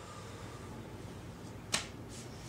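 A single sharp click near the end, over a faint steady low hum.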